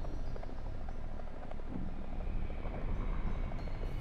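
A low, steady rumbling ambient drone, with faint thin high tones above it, of the kind laid under a horror story's opening.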